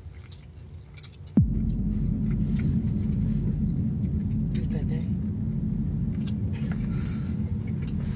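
A sudden falling bass-drop sound effect about a second and a half in, opening into a deep, sustained rumble that holds to the end, over faint mouth clicks of someone eating a piece of sweet potato pie.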